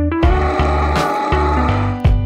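Background music: bright keyboard melody over a steady bass line, with notes changing every half second or so.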